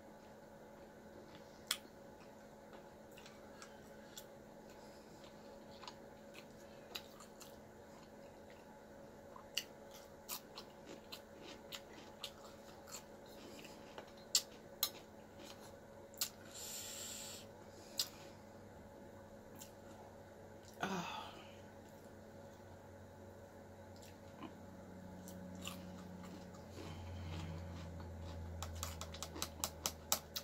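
Quiet chewing and mouth sounds of a person eating close to the microphone, broken by many scattered sharp clicks, with a low steady hum over the last few seconds.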